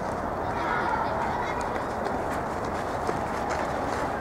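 Distant voices of young players and onlookers calling out across a football pitch, over steady wind noise on the microphone.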